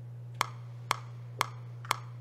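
Metronome click ticking four times, evenly spaced half a second apart, a steady count at about 120 beats a minute, over a steady low electrical hum.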